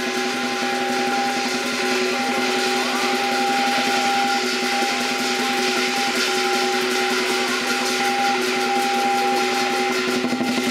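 Lion dance percussion band playing a fast, continuous drum roll, with sustained metallic ringing from the cymbals and gong over it.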